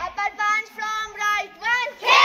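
Schoolgirls' voices calling out together in short, drawn-out cries during a self-defence drill, some of the cries rising in pitch near the end.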